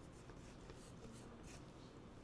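Faint scratching of chalk on a chalkboard: a few short strokes a second as a sector of a drawn circle is shaded in.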